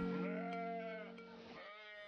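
A sheep bleating twice, faintly: one long bleat followed by a shorter one near the end, while background music fades out.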